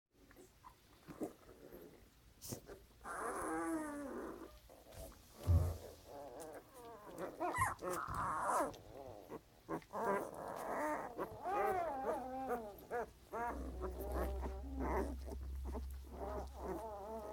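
Newborn puppies grunting and squeaking while they nurse. From about three seconds in there is a run of short, wavering whines, one after another.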